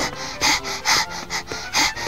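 Short breathy vocal sounds, like quick gasps or sniffs, repeated about two to three times a second over soft background music.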